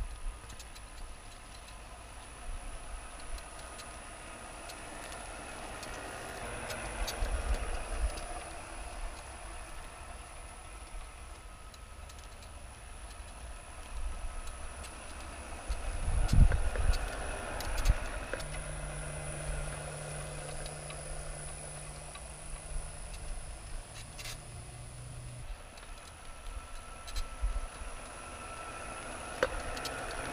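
Electric motor of a converted Krot walk-behind cultivator, run through a frequency converter, pulling a plough through soil on heavy cast-iron lug wheels. A steady faint high whine runs throughout, a low hum comes in past the middle for several seconds, and there are a few knocks and bumps.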